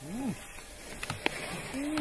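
People's voices outdoors, with a short exclamation at the start and another voice rising near the end. Two sharp clicks come about a second in.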